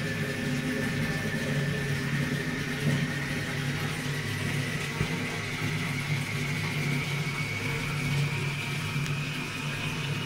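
Toilet cistern refilling: a steady hum of water running through the fill valve, with a thin whistle that slowly rises in pitch.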